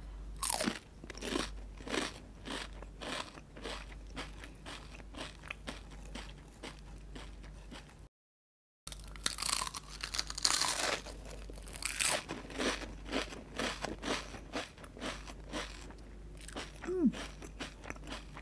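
Close-miked crunching and chewing of crisp seaweed teriyaki flavoured chips: a bite near the start and another, louder bite about nine seconds in, each followed by a run of crunchy chews. The sound drops out completely for under a second just after eight seconds in.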